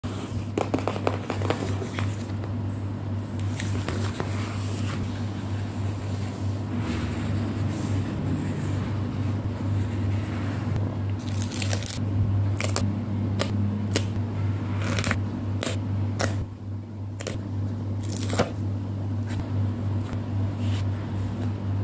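Close-up stationery handling: a notebook being handled and opened, a brush pen stroking along the paper, and stickers being peeled and set down with tweezers, heard as many sharp clicks, taps and short crinkles. A steady low hum runs underneath.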